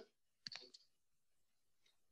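Near silence, with a brief cluster of faint clicks about half a second in.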